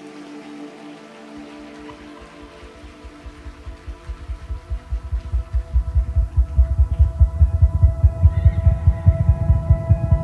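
Live worship-band music: a sustained keyboard pad chord holds while a low, rapidly pulsing bass comes in about a second and a half in and swells steadily louder over the next few seconds.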